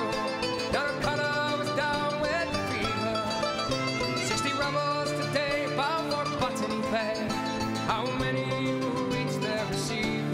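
Live acoustic band playing a folk-pop song: mandolin and two acoustic guitars strumming, with a voice singing the melody over them.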